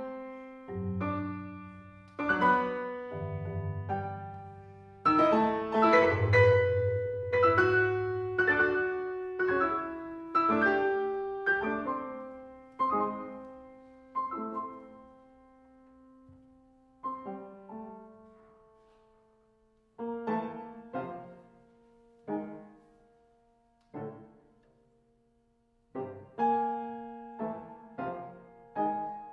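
Grand piano playing a slow passage of struck chords, each left to ring and die away. The chords come close together in the first half and thin out to one every second or two later on, with brief near-silent gaps between them.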